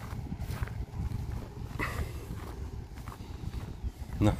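Footsteps of a person walking over dry grass, with steady low wind rumble on the microphone.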